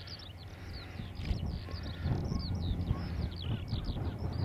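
A single-engine floatplane's piston engine and propeller, building in power about two seconds in as the aircraft begins its takeoff roll. Over it, a skylark sings overhead in a continuous stream of high, quick chirps.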